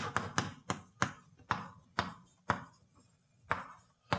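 Chalk writing on a blackboard: a string of sharp, irregular taps and short scratches as the letters go down, quicker at first and thinning out towards the end.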